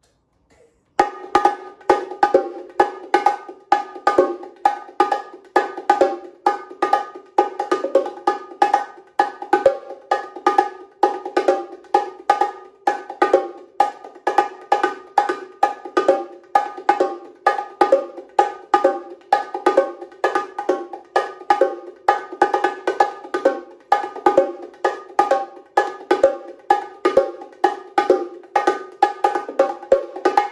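A pair of bongos played with bare hands in a steady, fast samba groove, a dense repeating pattern of sharp, ringing strokes. The groove outlines the surdo bass-drum beat of samba. It starts about a second in.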